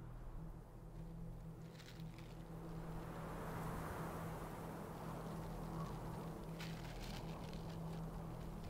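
Quiet outdoor ambience: a low steady hum under a soft hiss that swells from about three seconds in, with brief rustles or crackles about two seconds in and again near the end.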